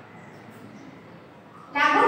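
Low room noise, then just before the end a woman's voice starts loudly on a long drawn-out vowel.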